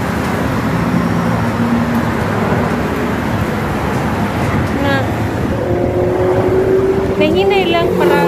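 Steady, loud road traffic on a highway below: the continuous rush of passing cars and trucks.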